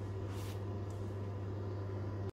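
Steady low hum of an electric oven running while it bakes, with one brief soft rustle about half a second in.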